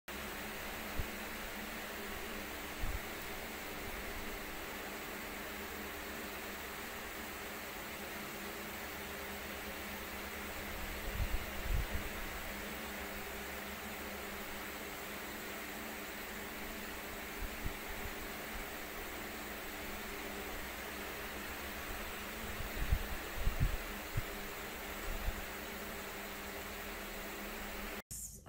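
Steady fan-like hiss with a faint hum under it, broken by a few soft low bumps, about a second in, around the middle and near the end.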